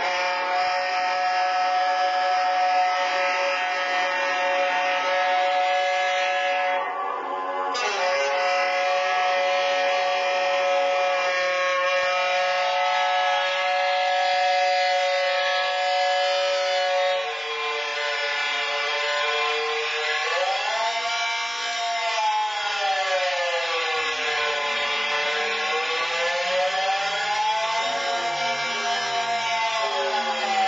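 Saxophone holding long sustained tones, two pitches sounding together with a bright edge, broken once briefly about eight seconds in. From about twenty seconds in the pitch bends slowly up and down in wide swoops.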